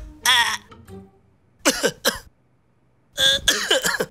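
A man making gagging, coughing throat noises with a tongue depressor held on his tongue, in three short bursts: the first wavers in pitch, the second slides down, the third is the loudest.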